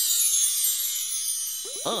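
A sparkling transition jingle of high, bell-like chimes that shimmer and slowly fade. Near the end a voice starts singing.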